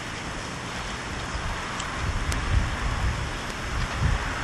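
Wind buffeting the microphone: a low rumble that grows in gusts from about halfway through, over a steady hiss.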